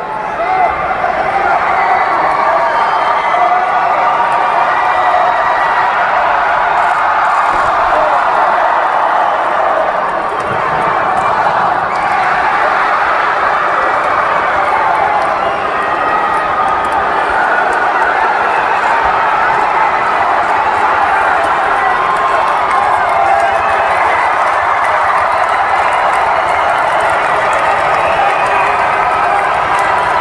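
Arena crowd at a lucha libre match shouting and cheering, many voices overlapping in a loud, steady din.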